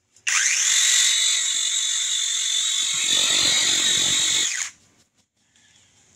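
Seesii PS610 21-volt cordless pole saw running its 6-inch chain with no load: the motor spins up quickly to a steady high whine, runs for about four seconds, then stops abruptly as the trigger is released and the auto brake halts the chain.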